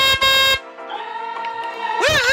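A short electronic horn honk from a toy car, about half a second long, over steady electronic background music, followed by a quieter held tone.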